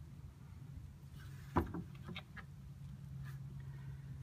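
Steel test plate being lowered back into a plastic bucket of rust-remover bath: a light knock about a second and a half in, then a few faint clicks, over a steady low hum.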